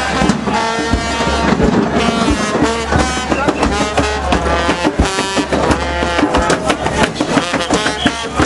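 Live street music played by revelers: a quick, busy drum beat under pitched instrument notes, with crowd voices mixed in.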